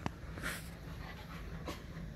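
A husky and a malamute play-wrestling and mouthing each other: dog breathing and snuffling, with a sharp click right at the start, a short breathy huff about half a second in, and a fainter click near the end.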